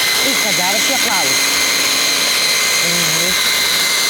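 Electric hand blender on a chopper bowl running at a steady high whine, grinding roasted hazelnuts, coconut oil, sugar and cocoa into a paste.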